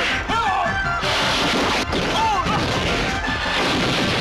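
Movie fight-scene sound effects, dense crashing and smashing with sharp blows about a second in and just before two seconds, over a music track.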